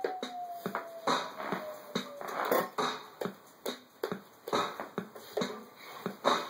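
A rhythmic beat of sharp clicks and taps, about two or three a second, with a faint tone gliding down in pitch during the first two seconds.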